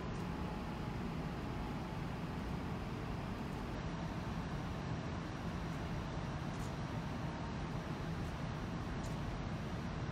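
Steady low rumble with a hiss over it from a ferry's machinery under way, unchanging throughout.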